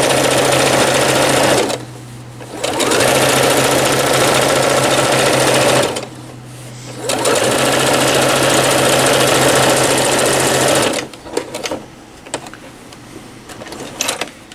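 Domestic electric sewing machine top-stitching fabric along a zipper, running in three stretches with two short pauses, each restart rising quickly to speed. It stops about three seconds before the end, leaving only a few light clicks.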